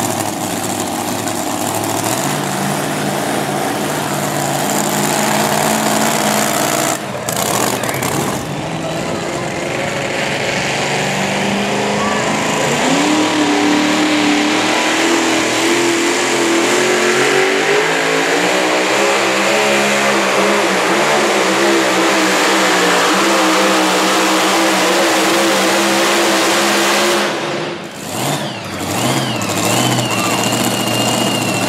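Supercharged engines of super modified two-wheel-drive pulling trucks. A blown engine runs on the line at first; then one runs at full throttle through a pull, its pitch climbing and holding high before it cuts off near the end.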